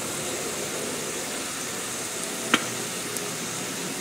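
Zucchini and carrots sizzling in butter in a stainless steel pan: a steady hiss, with a single sharp tick about two and a half seconds in.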